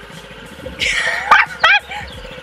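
A woman squealing and laughing in short high-pitched yelps about a second in, over the faint steady low running of a small scooter engine.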